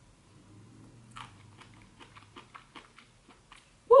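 A person chewing a forkful of spicy wakame ginger kimchi, with faint, irregular clicks about four or five a second, starting about a second in.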